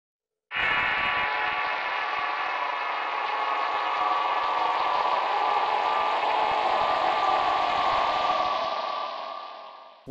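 Intro sound for a channel title card: a sustained, dense chord-like drone that starts suddenly and fades out near the end.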